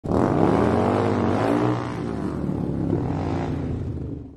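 An engine running, its pitch rising and falling as it revs, then fading away near the end.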